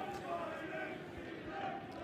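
Faint crowd noise from football stadium stands, with a few distant voices calling out.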